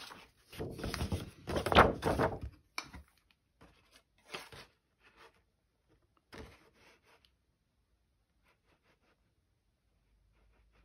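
A sheet of patterned card-making paper rustles and scrapes as it is handled and slid into a handheld craft punch, loudest in the first two or three seconds. A few light taps and scrapes of the punch and paper follow.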